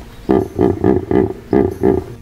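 Recorded hippopotamus snorting: a series of about six short snorts, roughly three a second.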